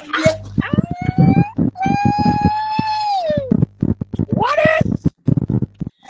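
A high-pitched human voice shrieking, holding one long note that falls away at the end, with shorter rising cries before and after it and short sharp knocks throughout.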